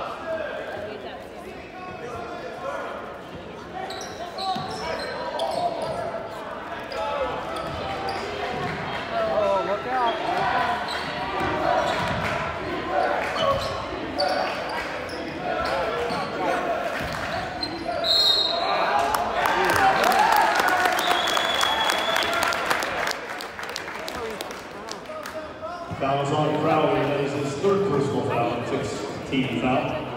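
Basketball game in a gym: crowd voices and a basketball bouncing on the hardwood court. Two short referee whistle blasts come about two-thirds of the way in, inside a louder stretch of crowd noise and clatter.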